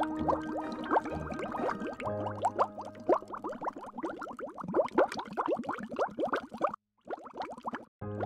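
Bubbling water sound effect: a dense run of short rising blips over a low steady hum, cutting out briefly near the end.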